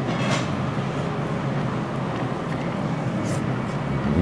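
Steady low mechanical hum of a small restaurant room, with two brief faint clicks of eating, one just after the start and one near the end, while rice is being chewed.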